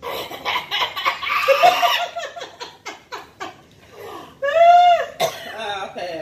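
Women laughing hard: breathy bursts of laughter, then a quick run of short laughing pulses, then one long high cry that rises and falls about three-quarters of the way through.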